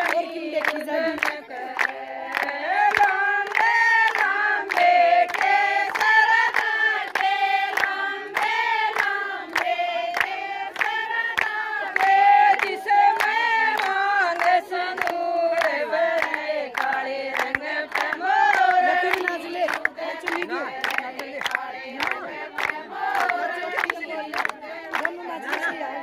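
A group of women singing a Haryanvi folk song in unison, accompanied by steady rhythmic hand clapping on the beat.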